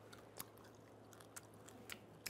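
Faint crunches of a crisp kamut nurungji (scorched-rice cracker) being chewed with the mouth closed: three short crunches over an otherwise near-silent room.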